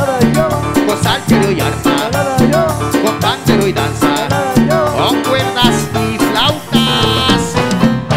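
Live Latin praise band playing a salsa-style tropical number, loud and steady, with a driving percussion beat and bass.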